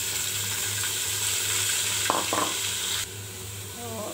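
Ginger, garlic and onion paste tipped into hot oil in an aluminium pot, sizzling loudly as it is stirred with a wooden spatula. The sizzle drops away suddenly about three seconds in.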